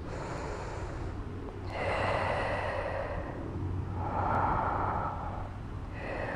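A woman breathing deeply while holding a squat: two long, audible breaths, the first about two seconds in and the second about four seconds in.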